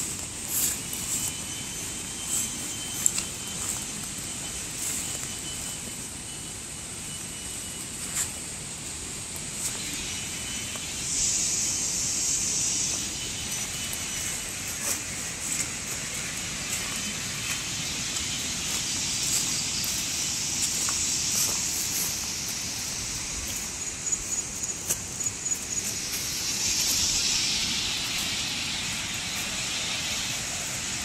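Footsteps and grass brushing against legs while walking through long grass, with short swishing bursts twice. Under them is a steady rushing background of outdoor noise from the river's rapids ahead.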